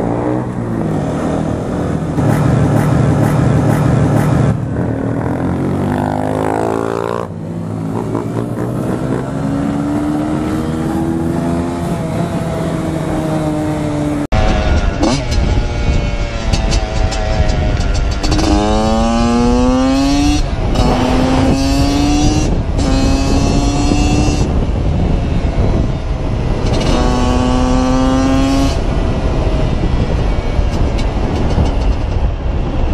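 Motorcycle engine heard from the bike itself, revving up and easing off. Then a dirt bike accelerates in several runs, its engine pitch climbing and dropping back at each gear change, over heavy wind noise on the microphone.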